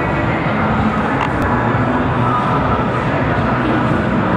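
Steady, loud din of a busy indoor exhibition hall, with the voices of many visitors blending together and no single sound standing out.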